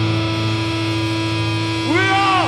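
Distorted electric guitars through stage amplifiers holding a steady, droning chord with amplifier hum, no drums playing.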